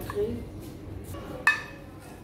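A metal spoon clinks once against a metal frying pan about one and a half seconds in, with a short ring, as pulled lamb is spooned out of the pan.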